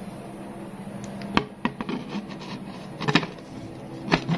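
Hard plastic clock-face casing being handled against a fan, giving a few sharp clicks and knocks. One comes about a second and a half in, and the loudest pair about three seconds in, over a low steady hum.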